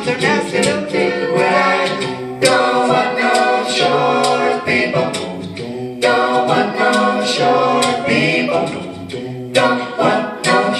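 A mixed a cappella vocal group of men and women singing in harmony through microphones, voices only with no instruments.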